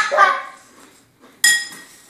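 A metal spoon clinks against a cereal bowl about one and a half seconds in, ringing briefly, after a short burst of laughter at the start.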